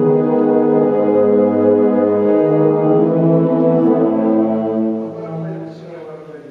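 Wind band playing long, sustained brass-heavy chords that change a couple of times, then cut off about five seconds in, the last chord dying away in the hall's reverberation.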